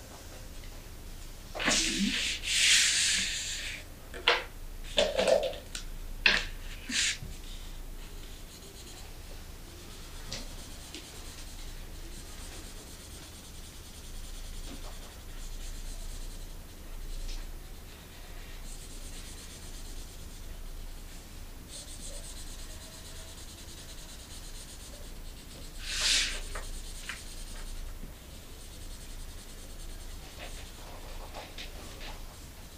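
Felt-tip markers drawing on paper: scratchy strokes and rubbing. They are loudest in a burst about two seconds in, with a run of short sharp strokes after it and another loud burst near the end. Fainter strokes fill the time between.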